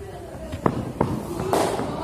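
Running footsteps on artificial turf close to the ground-level microphone, from a bowler's run-up. Two sharp thuds a third of a second apart are followed by a louder, scuffing footfall, with voices in the background.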